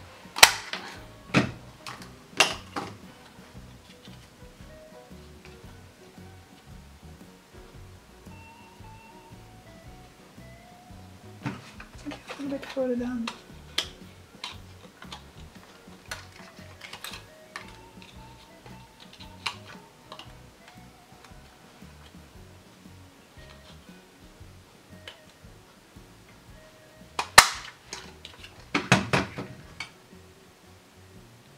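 A plastic hand-held circle punch clicking as it is handled and lined up on card stock, with a few sharp clicks near the start and the loudest snap near the end as it is pressed to cut out a round, followed by a quick cluster of clicks. Faint background music runs underneath.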